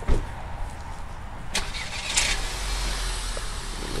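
A car door shutting, then a Volkswagen sedan's engine starting about two seconds in and settling into a steady idle.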